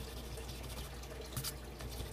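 Faint scratching of a coin scraping the coating off a scratch-off lottery ticket, with a couple of short sharper scrapes about a second and a half in, over a low steady hum.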